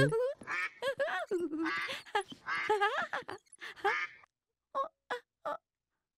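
Cartoon quacking of a plastic pull-along toy duck as it is dragged on its string: a busy run of quacks, then a few short, separate quacks near the end.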